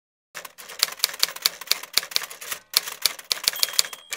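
Typewriter keys clacking in a quick, irregular run of strikes, about five a second, with a short break about two and a half seconds in. It is a typing sound effect, not a machine in view.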